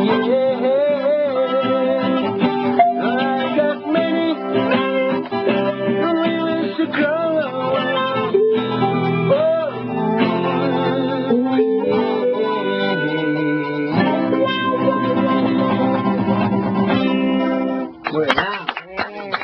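A man singing a reggae song live with vibrato over a strummed acoustic guitar. The music stops shortly before the end.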